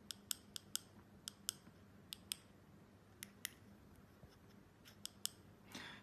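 Small push-buttons on an e-bike display's handlebar control pad clicking faintly: about a dozen sharp clicks, mostly in quick pairs, as a menu setting is stepped through one press at a time.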